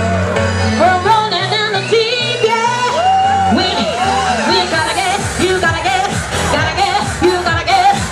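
A woman singing into a handheld microphone, her voice amplified over loud pop backing music with a steady bass line.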